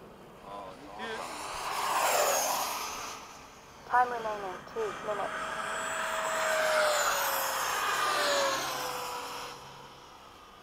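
Electric ducted-fan RC model jets making a low pass. A whine swells to a peak about two seconds in, then a second, longer pass builds from about five seconds and fades near the end, its whine sliding down in pitch as the jets go by.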